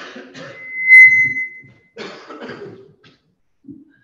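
A person coughing in short bursts, with a steady high-pitched whistling tone about a second long, the loudest sound, starting just under a second in.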